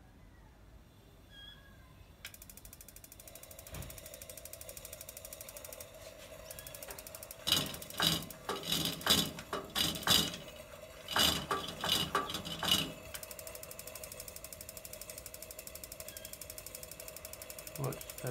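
Coleman Northstar dual-fuel lantern being worked by hand at its base while it is being lit: a fast, even ticking with a steady tone under it, and a run of about a dozen louder mechanical strokes in the middle.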